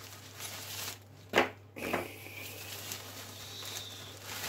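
Plastic packaging rustling and crinkling as it is handled, with two short, sharp, louder crackles between one and two seconds in.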